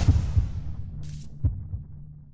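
Outro sound over the end card: a few deep bass thumps over a steady low hum, with a short hiss about a second in, fading out at the end.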